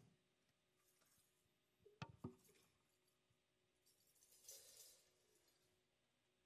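Near silence in the room between the announcement and the music, broken by two faint clicks about two seconds in and a brief soft rustle a little past halfway.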